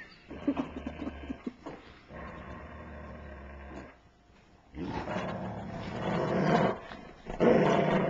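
Dogs growling while tugging at a plush toy in their mouths. The growls come in long bouts with a brief pause about halfway, and are louder in the second half.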